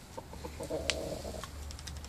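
Rooster clucking low: a few short clucks, then a longer, drawn-out cluck about half a second in. Near the end come several quick sharp clicks as it pecks at the ground.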